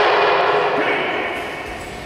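A group of karate students shouting together in one long held call that fades away after about a second and a half, echoing in a large gym hall.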